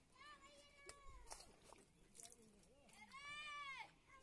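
Two faint, drawn-out mewing calls from an animal, each rising then falling in pitch: one in the first second, and a louder one about three seconds in.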